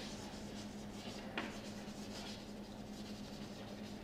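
Chalk writing on a blackboard: faint scratching strokes, with one sharper tap of the chalk about a second and a half in.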